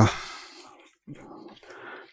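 A pause in a man's speech: the last word trails off into a breath, then a faint, low vocal murmur follows, like a hesitation sound, before he speaks again.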